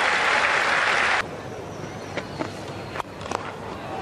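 Stadium crowd applauding and cheering a six, cut off abruptly about a second in. Then quieter ground noise with a few sharp knocks, the strongest about three seconds in being the cricket bat striking the ball.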